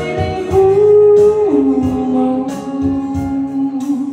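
Live Cantopop ballad: a woman singing long held notes into a microphone over electric keyboard accompaniment with a steady beat. The held note steps down in pitch about a second and a half in.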